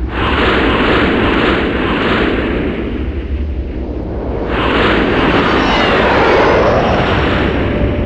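Sci-fi spaceship engine sound effect: a loud, dense rumble with sweeping whooshes, like ships flying past. It swells twice, the second pass beginning about halfway through.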